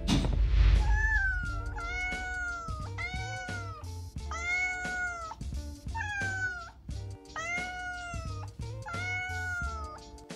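A cat meowing about eight times, roughly once a second, each call rising and then falling in pitch, over background music with a steady bass beat. A short whoosh opens it.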